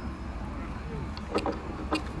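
Outdoor beachfront promenade ambience: a steady low rumble with faint distant voices, and a few short sharp clicks in the second half.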